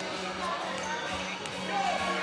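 Basketballs bouncing on a hardwood gym floor, under voices and chatter in a large, echoing gym.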